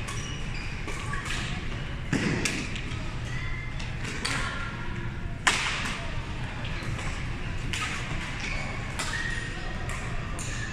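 Badminton rackets striking a shuttlecock during a doubles rally: a series of sharp hits a second or two apart, the sharpest about five and a half seconds in.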